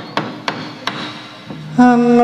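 A lull in the gamelan accompaniment: a few sharp, unevenly spaced percussion strikes over a faint held tone. Near the end a loud, sustained melodic instrument note comes back in.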